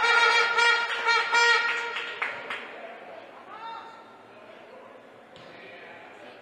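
A horn sounds one long, steady, slightly wavering note for about two seconds. It then dies away to faint sports-hall ambience.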